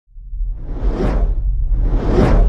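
Cinematic whoosh sound effect over a deep low rumble, swelling up from silence to a peak about a second in and then fading.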